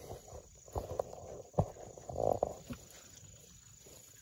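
Tomato vines rustling as ripe tomatoes are snapped off by hand, with a few sharp snaps of stems breaking, the loudest a little after one and a half seconds.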